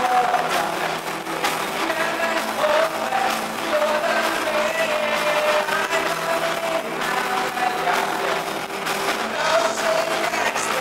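Live band music from the stage: electric guitar through amplifiers, with held melody notes over a steady, dense backing. The sound is thin, with little bass.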